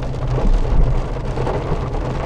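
Inside a car's cabin while driving through rain on a wet road: a steady low engine and road hum under the hiss of rain and tyres on water.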